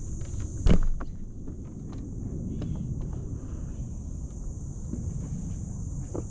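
Steady high-pitched insect drone over a low rumble, with one sharp knock a little under a second in.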